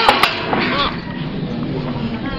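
Indistinct nearby voices, with a few sharp clicks right at the start and a steady low hum underneath.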